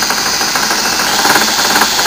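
Alternator test stand spinning a Delco 10SI alternator at just under 1,000 rpm, running steadily with a fast rattle.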